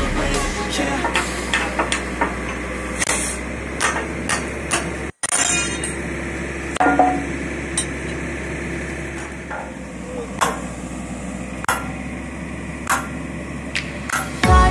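Sharp metal knocks and clanks, like hammer or tool strikes on steel, come at irregular intervals a second or more apart over steady site background noise, from work on an oilfield pumping unit. The sound cuts out briefly about five seconds in.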